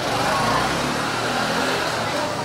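A low, steady engine-like hum with a few held pitches under the chatter of a crowd of shoppers.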